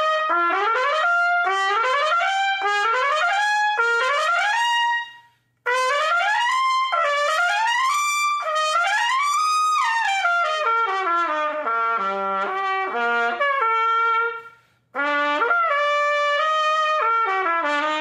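Lotus Universal Bb trumpet, with a phosphor bronze bell flare, yellow brass tuning slide and standard bottom valve caps, its brightest configuration, played solo. It plays quick rising arpeggio runs, then a longer phrase sweeping up and down that dips to low notes, then a shorter phrase, with two brief breaks for breath.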